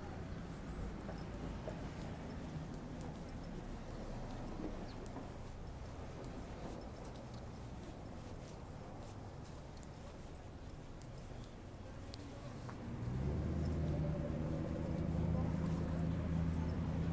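City street traffic: a steady low rumble of passing vehicles, with faint scattered clicks. About three seconds before the end, a vehicle engine grows louder with a steady low hum.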